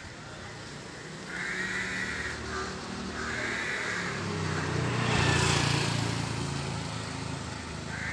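Street traffic: a motor vehicle's engine hum grows and passes close by, loudest about five seconds in, with tyre and road hiss. Two short, higher-pitched warbling sounds come in the first half.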